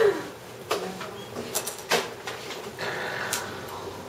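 A quiet lull in a small room: low background murmur broken by a few scattered light knocks and clicks.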